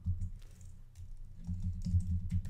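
Typing on a computer keyboard: a run of quick keystrokes that comes thicker and faster from about halfway in.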